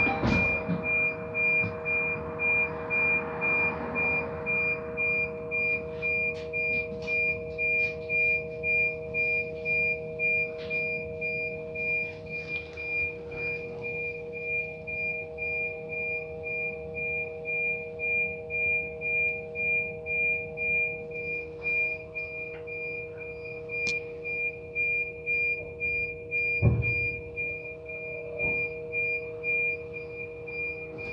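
Inside a stationary transit bus: a steady hum with two held tones, over which a high beep repeats about twice a second. A single low thump comes near the end.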